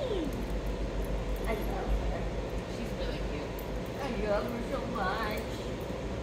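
Dog whining in short squeaky whimpers that bend up and down in pitch, a few spread out and a cluster about four to five seconds in.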